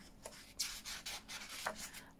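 Fingers rubbing across a paper page of a hardback book as it is lifted to turn, a run of quick dry swishes starting about half a second in.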